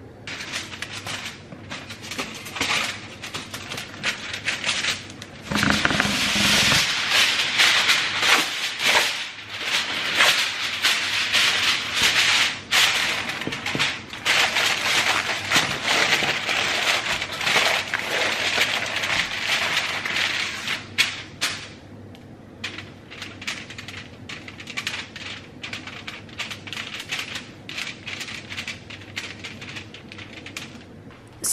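Aluminium foil being crinkled and pressed down around casserole dishes: a dense crackling rustle full of sharp little crunches. It thins out to sparse, quieter rustles for the last several seconds.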